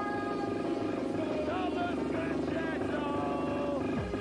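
Old-skool rave or techno track in a breakdown: a dense, fast-fluttering buzzing synth with gliding, bending tones above it and no kick drum.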